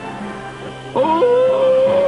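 Cartoon magic-transformation sound effect: soft music, then about a second in a single note slides up and is held steady, marking the toy bear's change into a superhero.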